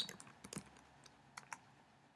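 Faint computer keyboard keystrokes: a few quick taps, then two more about a second later, as a word is finished and Enter is pressed.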